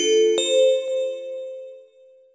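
A rising run of bell-like chime notes, the last two in this stretch: one struck at the start and a higher one about half a second in, which rings on and fades away. It is a section-break chime leading into a new section of the narration.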